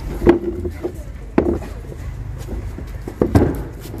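Handling noise from a phone camera's microphone: three sharp knocks and rubbing as the rig is touched, with a brief hum of voice at the first knock, over a steady low rumble.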